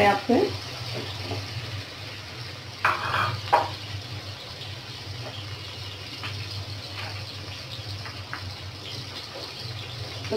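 Sliced onions sizzling in oil in an aluminium karahi, a steady frying hiss, with a spatula stirring and scraping the pan at the start and a low steady hum underneath. A couple of short louder sounds come about three seconds in.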